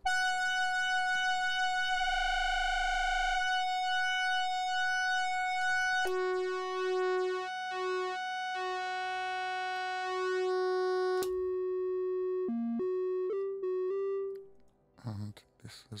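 Axoloti-board polyphonic synthesizer sounding held notes. A long high note warbles for about a second, then a note an octave lower joins it so that the two sound together, broken into short chunks. The high note cuts off with a click, and a few short lower notes follow before the sound stops.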